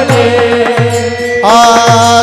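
Warkari kirtan music: small hand cymbals (taal) keep a steady beat over a sustained drone and a low pulse about every 0.6 seconds. Singing voices come in loudly about one and a half seconds in.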